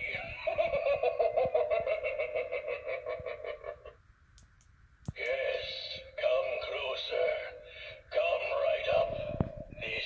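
Gemmy light-up hanging reaper head prop playing its recorded spooky voice lines and laughter through its small built-in speaker, with a pause of about a second about four seconds in.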